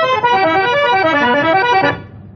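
Accordion playing a melody in an instrumental interlude of an old Tamil film song, the notes stepping down and climbing back up, then cutting off just before the end.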